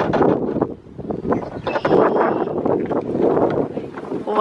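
Wind buffeting the microphone in a loud, uneven rush, with a few light knocks and a brief high tone about two seconds in.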